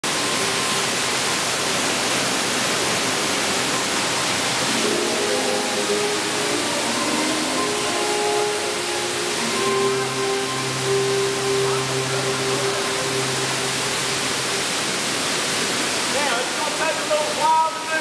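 Steady rush of an underground waterfall pouring into a cave. Sustained music tones sound over it through the middle, and voices come in near the end.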